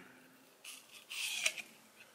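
Brief rustling scrape about a second in, ending in a sharp click: handling noise as the camera is moved.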